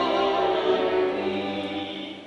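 Operatic soprano singing a long held phrase with vibrato over a low sustained orchestral note, the sound fading away toward the end.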